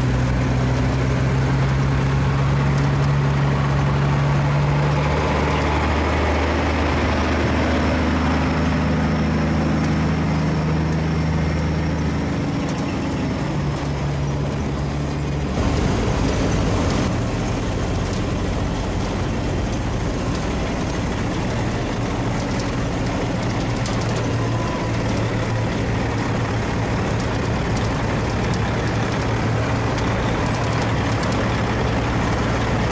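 Diesel semi truck (Western Star 4964) pulling an end-dump trailer, its engine note rising and falling over the first half. About halfway through the sound changes abruptly to the truck's engine running steadily close by.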